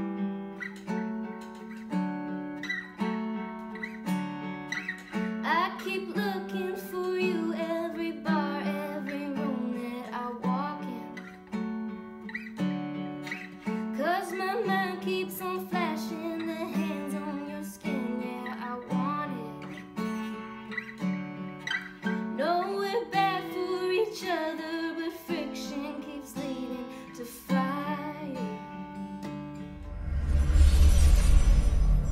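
Kepma D2-131A acoustic guitar played in a steady picked pattern through its built-in AcoustiFex effects, with sustained, ringing notes. A woman starts singing a verse over it about five seconds in and stops shortly before the end.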